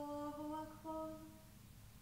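A single voice chanting unaccompanied in long, held notes that step between pitches, with the phrase ending a little over a second in.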